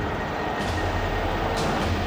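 Steady low rumble of an approaching vehicle in a TV episode's soundtrack, heard before its headlights come into view.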